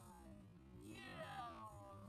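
A person's drawn-out call, sliding down in pitch about a second in, over faint background music.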